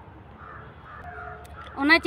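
A crow cawing faintly in the background, a harsh call of about a second.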